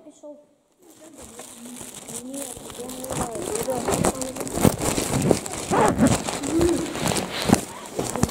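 Several voices talking over one another, growing louder after a brief silence at the start, with a few knocks and rustling as things are handled close to the microphone.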